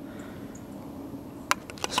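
Quiet handling of an aluminium beer can and a steel can tool, with one sharp click about one and a half seconds in.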